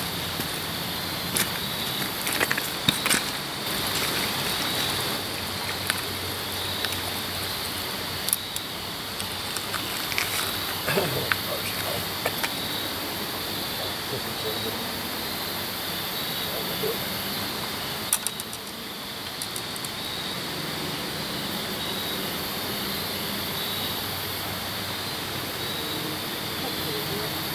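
Steady rushing noise of flowing river water, with scattered light clicks and knocks from handling gear, several close together in a few short clusters.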